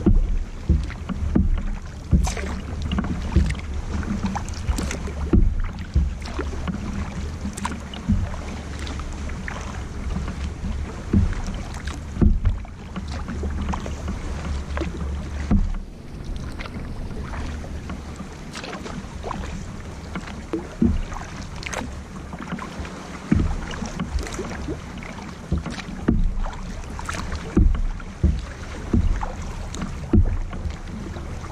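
Kayak paddle strokes: the double-bladed paddle dipping into the water on alternating sides, with splashes every second or two and water dripping off the blades, over a steady low rumble.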